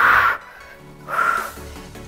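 Background workout music with a steady beat, and two loud, short breathy rushes about a second apart: forceful exhales through the mouth as she rolls back and comes up.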